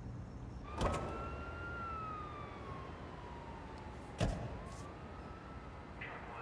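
A siren wailing slowly down and back up in pitch. Two sharp knocks sound over it, one about a second in and another about four seconds in.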